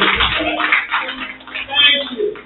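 A voice over the church microphone in short bursts, with a steady rushing noise behind it.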